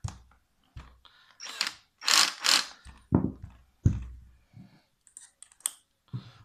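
Handling sounds from a cordless drill and a second drill fitted with a long screwdriver bit: a string of separate clicks, knocks and short scraping bursts, the two loudest a little after two seconds in.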